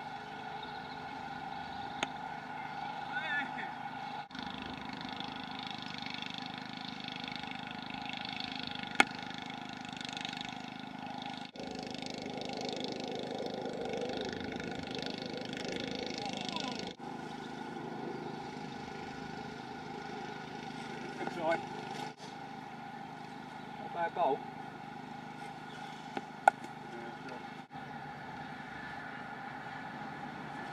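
Sharp cracks of a cricket bat striking the ball, the loudest about a third of the way in and another near the end, over a steady distant engine-like drone.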